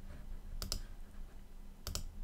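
Computer mouse button clicked twice, about a second and a quarter apart, each click a quick press-and-release pair.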